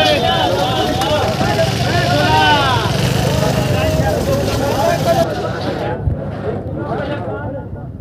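Hubbub of a busy wholesale vegetable market: many overlapping voices and vendors calling out at once, over a low vehicle engine rumble.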